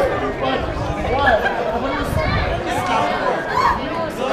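Several people talking at once, overlapping conversational voices with no music playing.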